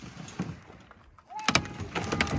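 Cut branches scraping and clattering as a loaded yard dump cart is tipped up onto a brush pile. A cluster of sharp knocks comes about one and a half seconds in. A thin, steady whistle-like tone starts just before the knocks and holds on.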